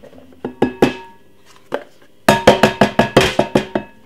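A plastic tub of seasoning mix knocked against a glass mixing bowl while being shaken out. A few single knocks come first, then a quick run of about seven knocks a second from about halfway in, the glass ringing under them.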